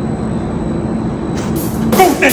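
Steady low mechanical hum and rumble, with a brighter hiss of noise coming in near the end.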